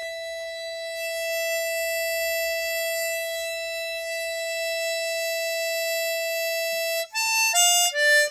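Chromatic harmonica holding one long, steady note for about seven seconds with no vibrato or tremolo, a plain long note that sounds boring. Near the end come three short notes stepping downward.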